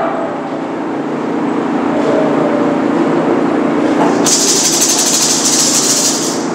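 A steady low drone, joined about four seconds in by a fast, hissing rattle like a shaker.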